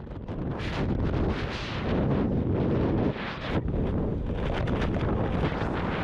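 Rushing air buffeting the camera's microphone during a tandem skydive, a dense roar of wind that surges and eases, dipping briefly about halfway through.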